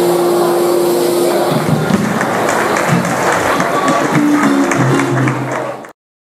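Live acoustic guitar and drum kit closing the song: a held guitar chord rings for the first second and a half, then gives way to a noisy wash with a few notes. The sound cuts off abruptly just before the end.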